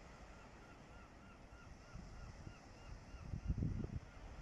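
A bird calling a rapid series of about a dozen short, arched notes, about five a second, faint over the wind. Wind rumbles on the microphone throughout and gusts louder near the end.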